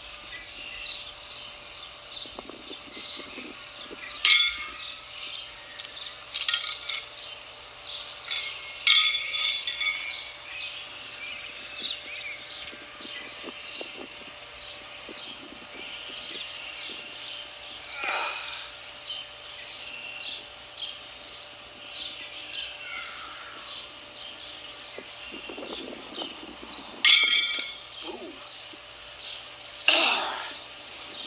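Steel pitching horseshoes clanking against a metal stake and against each other: two sharp ringing clangs in the first ten seconds and two more near the end, over steady songbird chirping.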